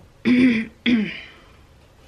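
A person clears their throat twice in quick succession, two short bursts about half a second apart.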